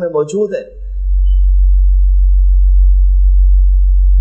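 A loud, steady, very low electrical hum, mains hum in the sound system, that swells up about a second in once speech stops and holds level to the end.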